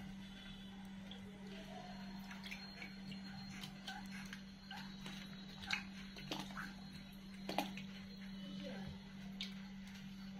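Hands squeezing and kneading a lump of freshly churned butter in a steel pot of cool water, a faint wet squelching and sloshing with a few small sharp splashes and clicks: the butter being washed free of buttermilk. A steady low hum runs underneath.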